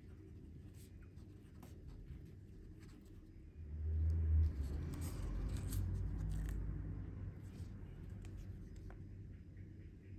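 A marker pen writing on a small slip of paper, faint scratchy strokes. About three and a half seconds in there is a dull low bump and handling rumble, then a soft paper rustle as the slips are picked up and handled.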